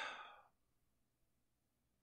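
Near silence: a voice trails off in the first half second, then only faint room tone.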